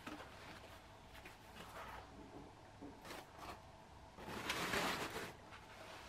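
Soft rustling of foam packing wrap and cardboard egg cartons being unwrapped and handled, with a louder rustle of about a second some four seconds in.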